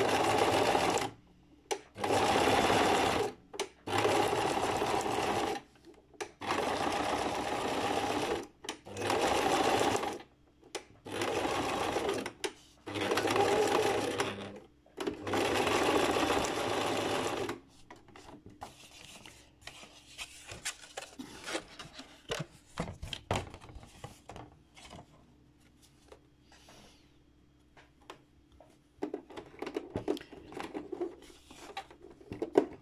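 Domestic electric sewing machine stitching a zigzag seam in about eight short stop-start runs of one to two seconds each. Then the machine stops and only faint clicks and fabric handling remain.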